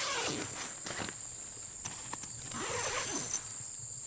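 The tent's door zipper is pulled open in two long scraping runs. Insects keep up a steady high buzz behind it.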